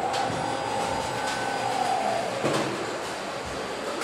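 Car assembly line machinery running: a steady mechanical hum with a faint whine that rises and then falls over the first two seconds or so, and a few light clicks.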